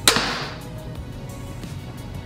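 A TenPoint Vapor RS470 reverse-draw crossbow firing: one sharp crack as the string releases, fading within about half a second, over background music.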